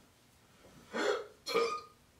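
Two short vocal sounds from a woman, one about a second in and another half a second later.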